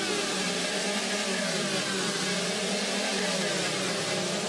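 Electronic dance music in a beatless breakdown: a sustained synth drone with wavering tones that slide up and down about once a second, over a wash of hiss, with no kick drum or bass.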